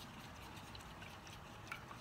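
Faint sound of a small paintbrush being swirled and tapped in a cup of rinse water, with a few light ticks of the brush against the cup.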